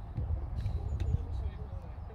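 Distant voices of players and sideline spectators calling out across a football pitch, with wind rumbling on the microphone. A sharp knock sounds about a second in.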